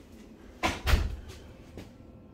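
Glass office door being opened: two sharp clacks of the latch and frame a little past half a second in and near one second, followed by a couple of lighter knocks.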